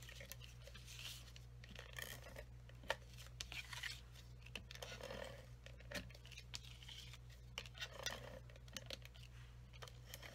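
Stampin' Seal tape runner drawn along the edges of a cardstock panel: several short, faint rasping strokes as the adhesive tape is laid down, with a few light clicks and paper rustling between them.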